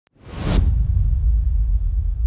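Intro sound effect for a news title card: a whoosh about half a second in, then a deep, steady low rumble.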